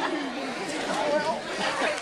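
Indistinct chatter: several people talking over one another, with no single voice clear.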